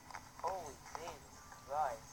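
Three faint, short high-pitched vocal sounds, each rising then falling in pitch, coming from a video playing on a phone's speaker.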